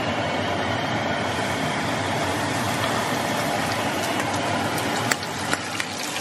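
Cod fillet coated in buttermilk and arrowroot sizzling in hot oil in a frying pan. The sizzle is steady, with sharp pops and crackles that come more often toward the end.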